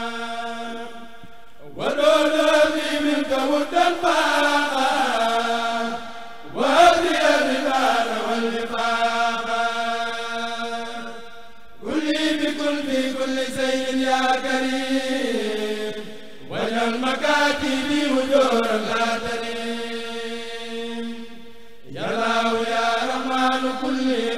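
A Mouride kurel of male voices chants a khassida in Arabic together, unaccompanied, through a microphone system. The chant comes in long phrases about every five seconds, each opening with a rising swoop and sliding down, with a low note held between them.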